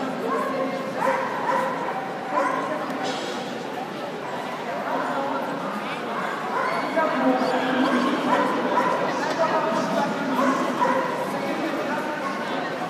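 A dog giving short, high-pitched cries again and again, over the chatter of people in a large hall.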